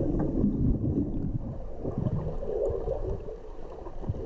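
Muffled low rumble and churn of water and bubbles picked up by a camera held underwater, as a swimmer flips and kicks through the water.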